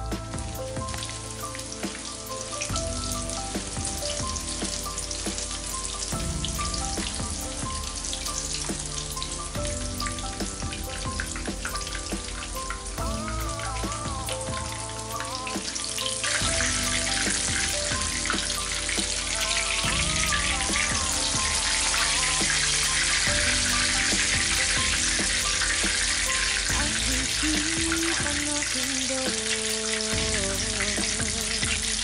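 Panko-breaded pork cutlets shallow-frying in hot oil in a pan, a steady sizzle that grows louder about halfway through, under background music.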